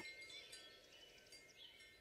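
Near silence, with a few faint, high chime-like tones that fade away.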